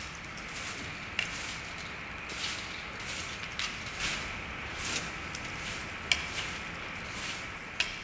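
A broom sweeping a concrete workshop floor in irregular brushing strokes, with footsteps and a few sharp ticks.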